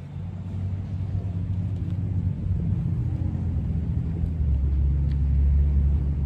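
A motor vehicle's engine running in a parking lot, a steady low rumble that grows louder about four seconds in.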